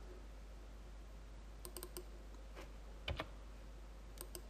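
Faint clicks of computer keys being typed: a quick run of four about halfway through, one more a little later, and a louder knock near the end.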